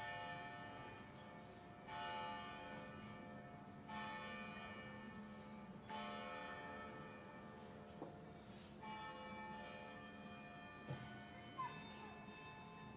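A church bell striking slowly and faintly, one stroke about every two seconds, each stroke ringing on and fading under the next. The strokes begin just as the clock turns 16:00, so this is typical of a bell striking the hour.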